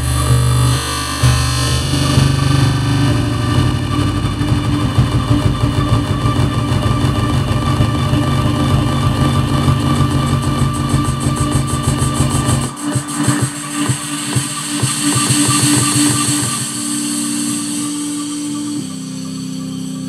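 Electronic dance music playing in a live DJ mix, with a steady beat and heavy bass. About 13 seconds in, the bass and beat drop out, leaving held synth notes and a bright high wash.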